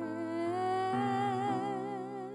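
A woman singing a held line of a worship song with vibrato, stepping up in pitch twice in the first second, over steady held chords from the band.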